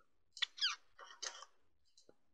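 Two faint, short clusters of squeaky sounds with small clicks, the first about half a second in with quick falling squeaks, the second just after a second.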